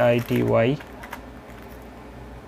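A man's voice for the first moment, then a few soft computer keyboard keystrokes as a word is typed.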